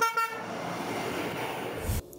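A vehicle horn sounds briefly, a short toot. A steady rushing noise follows, swells near the end and stops with a low thump.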